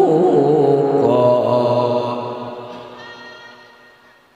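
A male qori's high-pitched Quran recitation sung into a microphone: the close of a phrase, a long held note that fades away over the last two seconds.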